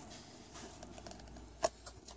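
Trading cards handled quietly in the hands, with one sharp click a little over one and a half seconds in.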